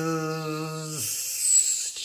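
A man's voice holding a steady buzzing "zzz" on one pitch, then breaking off about halfway into a long hissed "sss". This is a vibration exercise sliding between the Z and S sounds.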